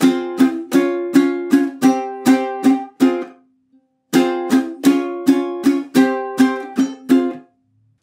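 Ukulele strummed with quick down-strokes through a three-chord riff: F minor (one strum damped short, then two), C-sharp major three strums, C5 three strums. The riff is played twice, with a pause of about a second between the two passes.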